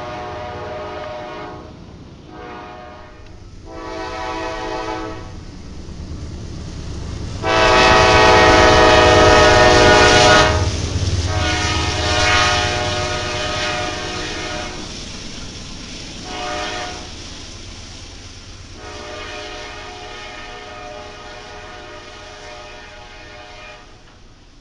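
Diesel freight locomotive's air horn sounding a chord in a string of separate blasts of varying length, the longest and loudest lasting about three seconds about eight seconds in, over the low rumble of the passing train.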